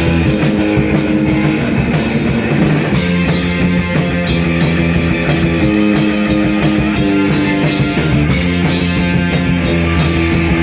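A punk rock band playing live in a rehearsal room: electric guitar, electric bass and a drum kit, loud and steady.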